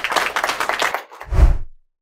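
A small group clapping, fading out about a second in, followed by a single low thud near the end.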